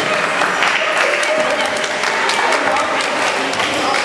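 Scattered hand clapping mixed with overlapping voices of players, reverberating in a large indoor sports hall.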